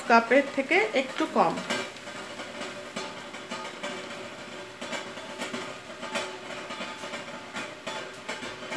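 Flour poured from a cup into a bowl of semolina, the cup tapped to shake out the last of it: a soft dry rustle with a few light taps over a steady background hiss.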